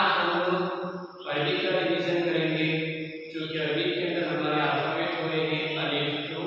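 A man's voice reciting Arabic in a drawn-out chanting style, holding long pitched phrases with a brief pause about a second in.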